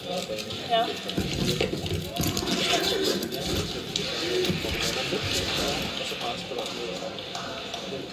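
Indistinct speech over background music.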